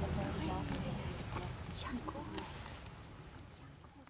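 Indistinct voices of people talking in the background outdoors, with a few light clicks, the whole sound fading out steadily toward the end.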